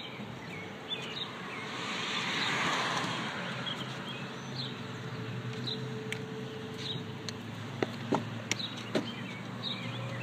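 Parking-lot noise: a car passes, rising and fading about two to three seconds in, over a steady low hum. A few light clicks come near the end.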